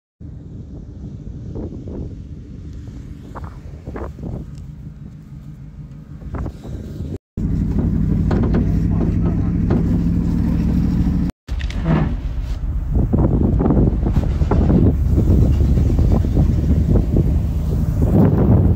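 A vehicle engine running steadily as it tows a loaded trailer across a field, with knocks and rattles from the trailer along the way. It gets louder after the first seven seconds or so.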